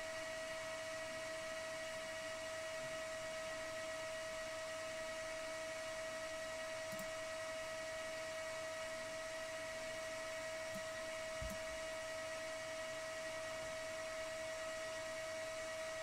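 Faint steady electrical hum and hiss with a constant whining tone, room tone of the recording; a couple of faint clicks near the middle.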